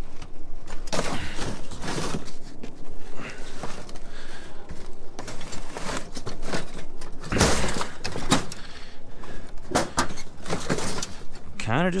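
Scrap metal clanking and clattering as a plastic bin of steel bits is tipped and sorted into a pickup truck's loaded bed: a run of irregular knocks, with one heavier crash a little past the middle.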